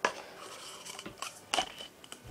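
Light taps of disposable cups being flipped and set down mouth-down on a table: a sharp tap at the start, a fainter one about a second in, and another about one and a half seconds in.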